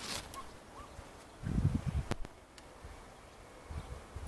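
Faint outdoor background with low rumbling bumps about one and a half seconds in and a few sharp clicks: handheld camera handling as it is swung up into the tree.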